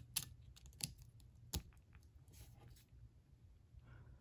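A few light plastic clicks and taps as a 30-pin dock connector is handled and pressed onto a bare iPod nano logic board. The sharpest click comes about a second and a half in.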